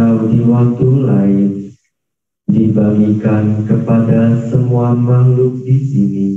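Group chanting of Buddhist Pali verses, led through a microphone, on a steady, even pitch. The chant breaks for a short breath about two seconds in, then goes on with the next phrase.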